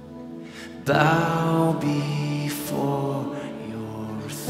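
Live worship band playing a slow song: sustained chords, with a strummed acoustic guitar chord coming in louder about a second in and ringing out.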